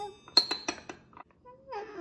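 A metal spoon clinking against a small glass cup, four or five quick clinks in the first second, then a toddler's voice near the end.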